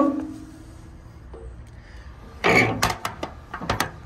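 A metal storage compartment door in a truck's rear bumper is swung shut with a loud clank about two and a half seconds in. A few sharp clicks from its paddle latch follow.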